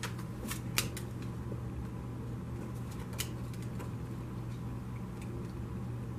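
Tarot cards being handled and laid out on a wooden table: a few sharp card clicks within the first second and another about three seconds in, over a steady low hum.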